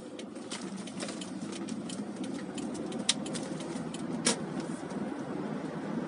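Car road and engine noise heard inside the cabin, growing a little louder as the car picks up speed, with scattered sharp clicks and ticks throughout, the loudest about three seconds in and just after four seconds.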